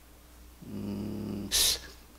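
A man's low, steady hum lasting under a second, followed by a short breathy hiss.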